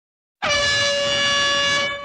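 A single steady horn blast that starts suddenly about half a second in, holds at one pitch for about a second and a half, then fades.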